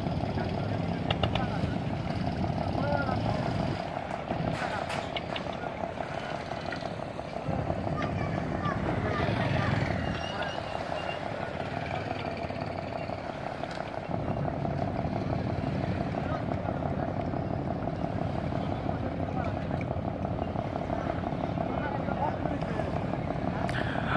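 An engine running steadily, with a constant hum and a low rumble, while people talk indistinctly in the background.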